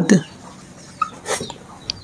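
Marker pen writing on a whiteboard: a few short squeaks and scratches about a second in and again near the end.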